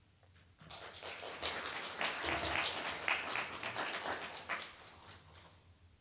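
Audience applauding. The clapping starts a little under a second in, holds for a few seconds and dies away near the end.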